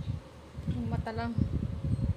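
Irregular low bumping and rumbling from a phone being handled close to the microphone, with a short vocal sound from a woman about a second in.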